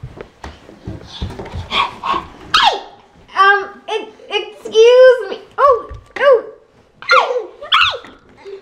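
A toddler's high-pitched wordless vocalising: a run of short squeals that rise and fall, packed into the second half, after a few soft thumps early on.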